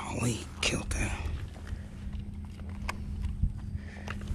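A short, breathy muttered voice in the first second or so, too unclear for words, over a low steady hum. Then quieter handling noise with a sharp click about three and a half seconds in, as a bass is held and unhooked in a landing net.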